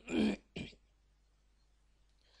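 A person briefly clearing their throat in two short bursts, followed by quiet room tone.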